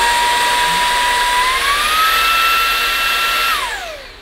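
Easine by ILIFE M50 cordless handheld vacuum running with a steady whine on its low power setting. About a second and a half in it is switched to the higher power setting and the whine steps up in pitch. Near the end it is switched off and the motor winds down.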